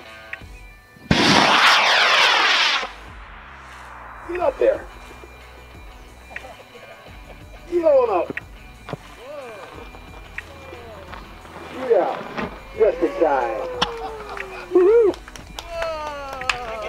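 Model rocket motor igniting and lifting off: a loud rushing roar starting about a second in, lasting under two seconds, then dropping away as the rocket climbs.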